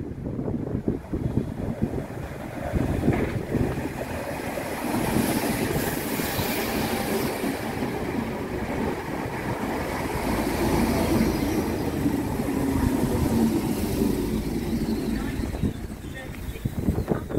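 Class 313 electric multiple unit running in along the platform, a steady rumble of wheels on rail throughout as it slows.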